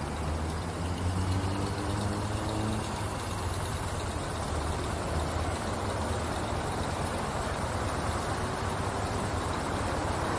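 City traffic idling at a red light: a steady low engine rumble, with an engine rising in pitch as a vehicle pulls away about one to three seconds in.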